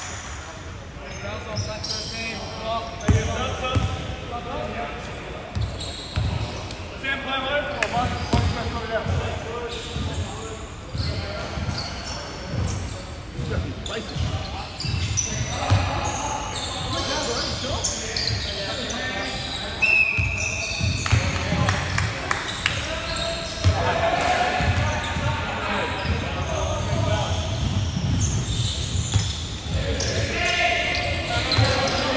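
Basketball being bounced on a hardwood court in a large echoing hall, with repeated thuds and indistinct players' voices. There is a brief high tone about two-thirds of the way through.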